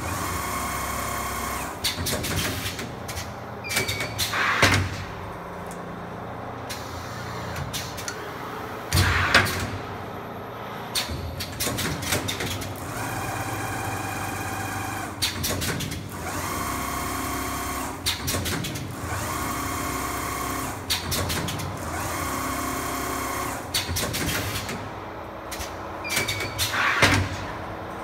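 Automatic double-flyer armature winding machine running: steady motor whine while the flyers wind, broken about every five seconds by a short loud burst of clicks and knocks as the machine moves on in its cycle.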